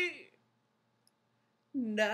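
A man singing unaccompanied. A held note fades out just after the start, then there is about a second and a half of silence, and a new note begins near the end, scooping up in pitch.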